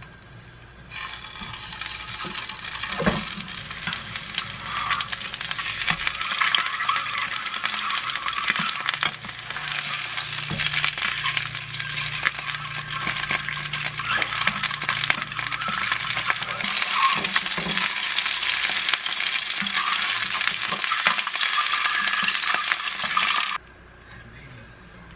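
Rice-paper-wrapped rice cake and sausage skewers and boiled eggs sizzling in olive oil in a nonstick frying pan, with light taps of a spatula as they are turned. The sizzle starts about a second in and cuts off suddenly near the end.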